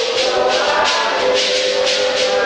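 A congregation singing a hymn together, with shaken rattles keeping a steady beat of about two to three strokes a second.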